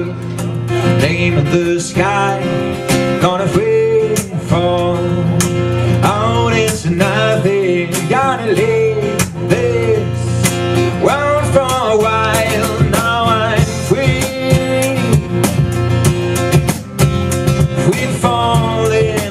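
Live acoustic music: a man singing to a strummed steel-string acoustic guitar, with hand-played box-drum beats and cymbal taps keeping a steady rhythm.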